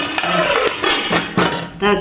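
Metal lid set onto a pot of curry, with clattering knocks of metal on metal as it seats and a ladle is laid on top.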